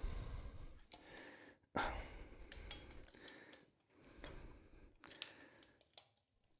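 Faint handling noise as the PTRS-41's carrying handle is worked loose on the barrel: soft rustling and a few small metal clicks.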